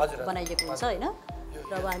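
A metal spoon clinking against the side of a small glass bowl as its contents are stirred, in a few short, light clinks.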